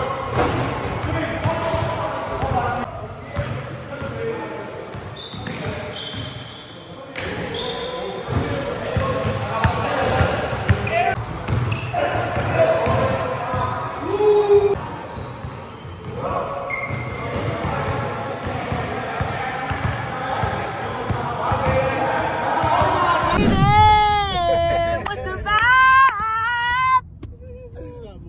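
Basketballs bouncing on a gym floor during a pickup game, with players' indistinct voices echoing in the large hall. Near the end there is a loud, wavering, high-pitched call lasting a few seconds.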